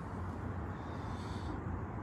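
Low, steady background noise with no distinct sound in it.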